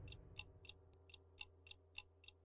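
Faint clock-like ticking sound effect, about three to four ticks a second, over a faint steady low hum.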